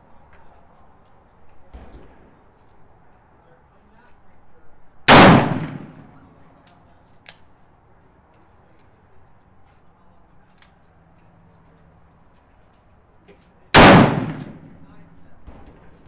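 Two shots from an 1847 Colt Walker .44 black-powder revolver loaded with 40 grains of powder and a pure-lead round ball, about eight and a half seconds apart. Each shot rings on in a long echo off the concrete of a covered range, with faint small clicks between the shots.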